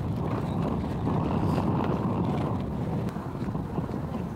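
Wind buffeting the microphone: a steady, low rumble without any clear tone.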